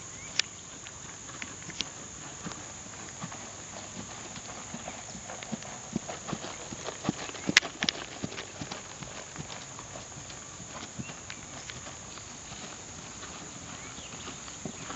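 Hoofbeats of a ridden horse trotting on grass and dirt: a run of soft, uneven thuds that grow louder and closer in the middle, with the sharpest strike about halfway through.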